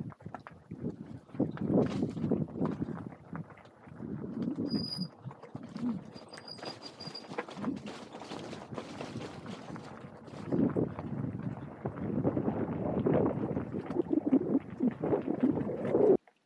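Bicycle tyres rolling over loose gravel and stones on a dirt single track, a continuous uneven crunching dotted with knocks and rattles from the loaded touring bike.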